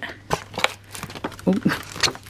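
Paper wrapping and sheets rustling as they are unfolded and leafed through by hand: a run of short crackles.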